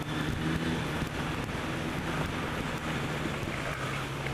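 Suzuki Bandit's inline-four engine running steadily at a modest road speed, heard with wind rushing over the helmet-mounted microphone.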